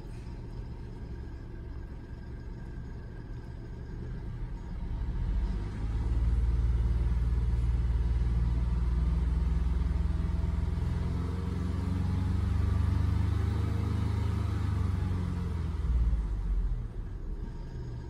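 A low rumble that swells about six seconds in, holds loud for roughly ten seconds, and fades near the end.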